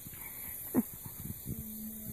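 Nine-banded armadillo rooting in grass close by: short low grunts and snuffles, one held for about half a second near the end, with one sharp louder sound just under a second in.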